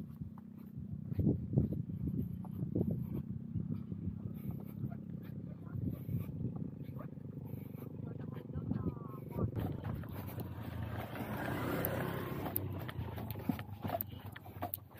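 Wind rumbling on the microphone of a camera carried by a runner on a sandy dirt track, with irregular footfalls and movement noise. A broader rushing sound swells about ten seconds in, peaks and fades just before the end.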